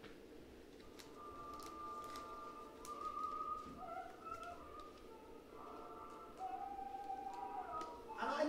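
Faint recorded opera music with long held notes that change pitch every second or two, played back as the sound of an early radio broadcast, with a few light clicks.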